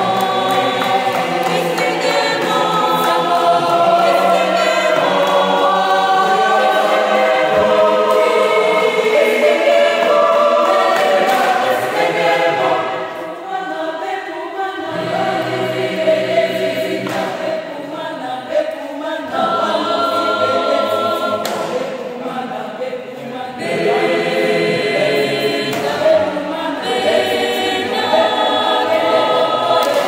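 Mixed choir of men's and women's voices singing a cappella in several-part harmony, with held chords and a softer passage about midway.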